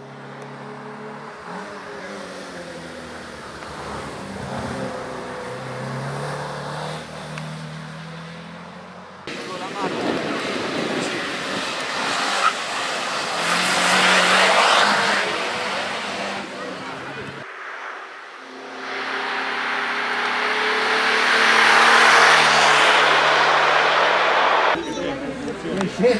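Alfa Romeo Alfasud Sprint race car's flat-four boxer engine at high revs, its pitch climbing and dropping repeatedly as it accelerates through the gears up a winding road. The sound comes in three cut-together passes, with abrupt changes about 9 and 17 seconds in. It is loudest as the car goes close by in the middle and near the end.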